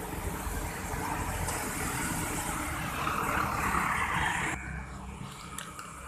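Road traffic passing close by: the engine and tyre noise of cars and motorbikes going past. The noise swells toward the middle and then cuts off suddenly about four and a half seconds in.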